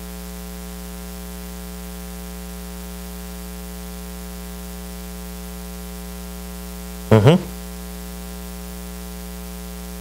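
Steady electrical mains hum with a buzz of evenly spaced overtones in the recording, with one brief spoken sound a little after seven seconds in.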